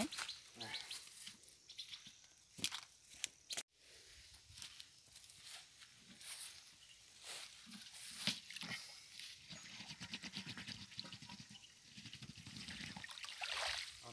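Faint outdoor sounds of a plastic watering can being dipped into a pond and filling, water gurgling into it in the second half, with scattered knocks and rustles from handling before it.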